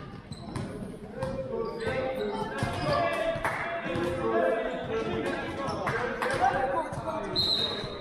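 A basketball bouncing on a sports-hall floor in repeated sharp strikes, with echoing shouts from players and spectators. A short high tone sounds near the end.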